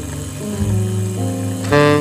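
Background music with held, stepping notes and a louder, brighter note near the end.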